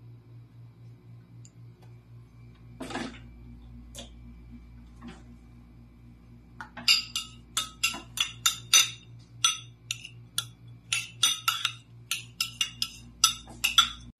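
A metal spoon clinking rapidly and irregularly against a glass bowl as chopped garlic is stirred into canola oil, starting about halfway through; before that, only a brief rustle and a few light knocks.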